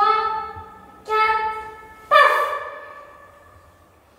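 Speech: a high voice calls out a count, "four" and then "paf", each word ringing on in the room's reverberation.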